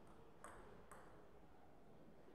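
Table tennis ball clicking off bat and table during a rally: three light, sharp ticks about half a second apart.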